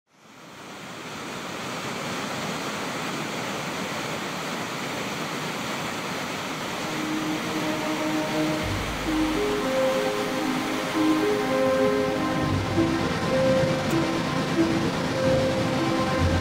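Steady rush of water pouring over a stone dam spillway, fading in at the start. About seven seconds in, background music with a melody and bass comes in over it.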